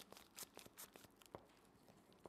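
Near silence broken by a few faint clicks and light crinkles of a plastic bag being handled.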